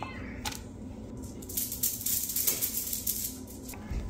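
Light handling noises as a waffle is set on a plastic plate and served: a run of quick soft clicks and rattles starting about a second and a half in, over a faint steady hum.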